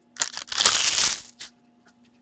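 Foil card-pack wrapper crumpled in the hands: a few short crackles, then a dense crackling burst lasting under a second.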